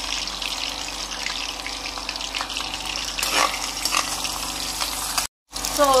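Sliced onions sizzling in hot palm oil in a frying pan: a steady hiss with many small pops, cut off abruptly about five seconds in.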